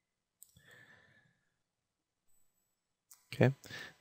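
A faint exhale close to the microphone about half a second in, starting with a soft click; otherwise near silence until a man says "okay" near the end.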